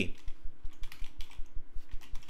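Typing on a computer keyboard: a quick, steady run of keystrokes.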